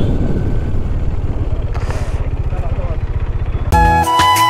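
Motorcycle engine running while riding, its firing pulses even and steady. Music cuts in just before the end.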